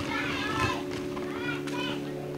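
Several children's voices chattering, with a few short high-pitched calls, over a faint steady hum.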